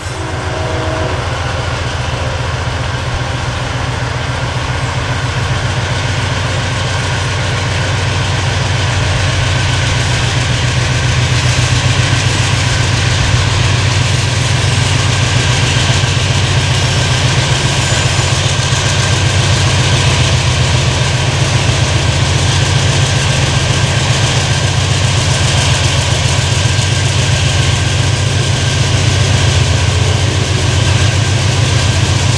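Diesel-electric freight locomotive hauling a train slowly toward the listener: a deep steady engine rumble that grows gradually louder as it nears, with a steady higher whine over it.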